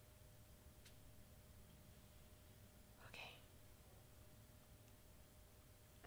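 Near silence: room tone, with a faint click about a second in and a brief soft hiss about three seconds in.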